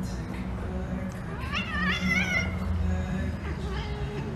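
A cat gives one wavering, high meow-like yowl about a second and a half in, lasting about a second, while two long-haired cats wrestle.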